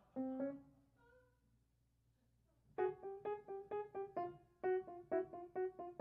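Solo piano accompaniment: a couple of notes near the start and a short pause, then a quick run of short, detached notes from about three seconds in, about four a second.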